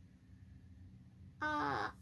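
A child's brief held vocal sound, about half a second long, starting about a second and a half in, after a stretch of quiet room tone.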